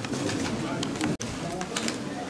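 Quieter hall sound with faint, indistinct voices in a pause between a man's spoken phrases, broken by a brief dropout about a second in.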